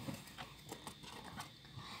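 Faint, scattered light clicks and taps, a handful in two seconds, as a paper flashcard is handled and swapped for the next one.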